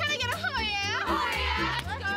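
High-pitched voices shrieking and shouting over background music with a steady bass beat.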